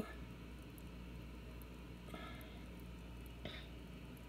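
Quiet room tone with a low steady hum, a faint short voice-like sound about two seconds in, and a faint click a little later.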